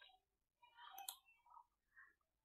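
Near silence, with a faint short click about a second in.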